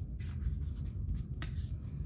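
Cardstock being handled and slid on a craft mat: soft paper rustling with one small tap about one and a half seconds in, over a steady low hum.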